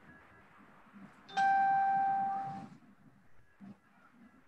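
A single chime tone that starts suddenly, holds one steady pitch for about a second and fades out, like a doorbell or an electronic alert.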